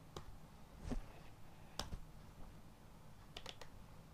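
Faint, sparse computer keyboard keystrokes: a few single key presses spaced about a second apart, then a quick run of three near the end.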